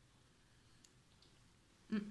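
Faint, soft mouth clicks of chewing a bite of a Bounty coconut chocolate bar, ending in a short hummed vocal sound.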